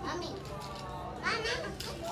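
A toddler's voice babbling without clear words, with a louder high-pitched call a little past a second in.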